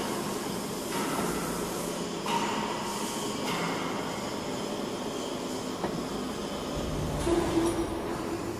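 Square pipe roll forming machine running, its gearbox-driven roller stations forming steel strip: a steady mechanical running noise with faint whining tones.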